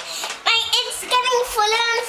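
A child singing a wordless tune in a high voice, starting about half a second in, with long held notes that waver.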